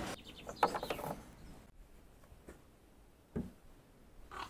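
Bonnet release lever of a Skoda Fabia Mk1 pulled, giving a few short plastic clicks and a clunk in the first second as the bonnet catch lets go. Two faint knocks follow later.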